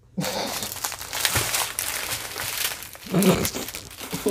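Plastic packaging crinkling loudly and unevenly as a bundle of small plastic bags of diamond-painting drills is pulled out of its clear plastic wrap and handled. The sound starts abruptly just after the beginning.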